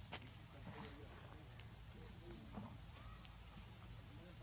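Faint outdoor ambience: a steady high-pitched drone with a low hum beneath, a few soft rustles and clicks as a macaque moves through grass, and several brief high chirps.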